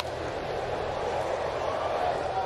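A single sharp smack right at the start as the pitched baseball reaches the plate, then the steady murmur of a ballpark crowd.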